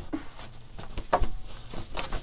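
Cotton fabric rustling and scrunching in a few short bursts as a sewn fabric tube is pulled inside out to turn out the tote bag.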